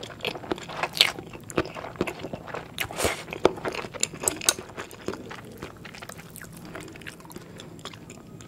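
Close-miked chewing and slurping of fried instant noodles (Indomie mi goreng): wet mouth clicks and smacks, busiest over the first five seconds and quieter toward the end.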